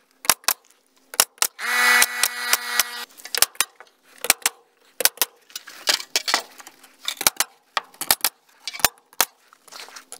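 Work with a handheld tool on a board-and-batten wall: a run of sharp clicks and knocks, several a second. A steady whine from a tool motor lasts about a second, around the two-second mark.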